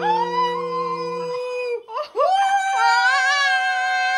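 Voices singing long held notes: a low voice and a higher voice hold a note together, then after a short break near the middle a higher note scoops up and is held with a slight waver.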